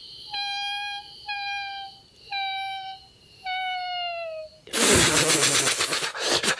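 Sound-poetry vocal performance: a voice sounds four short held high notes in a row, the last one sliding down in pitch, over a faint high steady tone. Near the end a loud rasping, rapidly pulsing hiss takes over.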